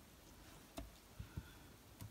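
Near silence with three faint, short taps and knocks: hands handling and setting down small die-cut card pieces on paper over a cutting mat.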